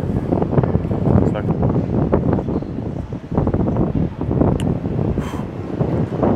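Wind buffeting the microphone over steady city street traffic noise.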